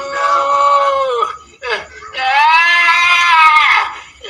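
A person's voice in two long, high-pitched wailing cries, each drawn out for over a second with the pitch rising and falling. The second cry is louder.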